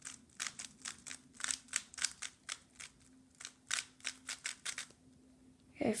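Stickerless 3x3 speed cube being turned quickly by hand, its layers clicking in a rapid run of several turns a second as it is scrambled for the next solve; the turning stops about five seconds in.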